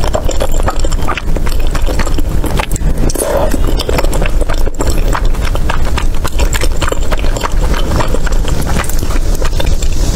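Close-miked chewing of chewy tteokbokki rice cakes in thick spicy sauce: dense wet smacking and sticky mouth clicks.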